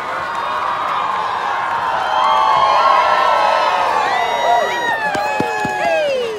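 Bleacher crowd at a football game yelling and cheering as the wave passes through the stands, swelling to its loudest about halfway. Near the end, many long shouts slide down in pitch.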